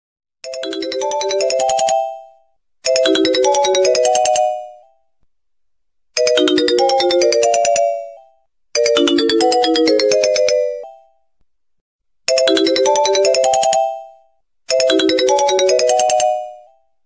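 A short ringtone melody of quick pitched notes, played six times over with brief silent gaps between the repeats.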